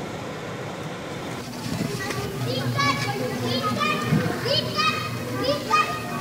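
Children's voices calling and chattering in the background over a steady street noise, the high calls starting about a second and a half in.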